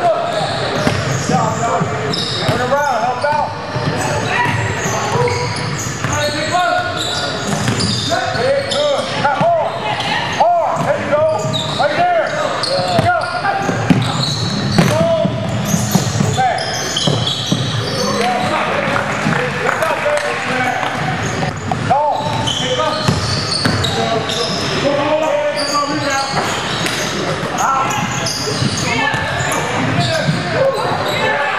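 Many voices talking and calling out in an echoing gymnasium, with a basketball bouncing on the hardwood court.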